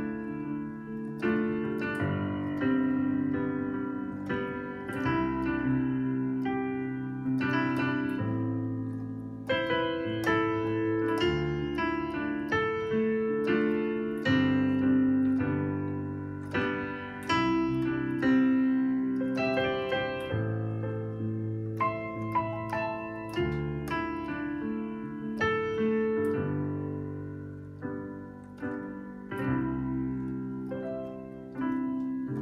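Digital piano played with both hands through a 1–6–2–5 (I–vi–ii–V) chord progression: struck chords that ring out, the bass note changing about every two seconds, with higher notes on top.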